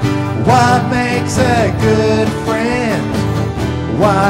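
Acoustic guitar strummed steadily, with a man singing a children's song over it from about half a second in.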